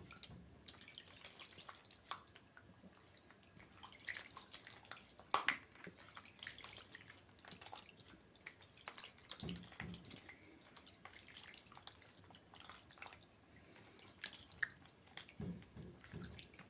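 Hands rinsing water over a face: faint, irregular splashes and drips of water, with one sharper splash about five seconds in.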